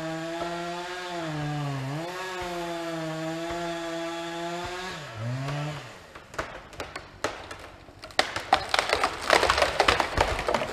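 Two-stroke chainsaw running at high revs in a cut, dropping in pitch twice under load and stopping about six seconds in. Then wood cracks and splinters, a few sharp snaps at first and then dense loud crackling near the end, as the cut tree starts to give way.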